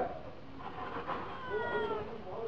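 A cat meowing: a faint, drawn-out call that slowly falls in pitch in the second half.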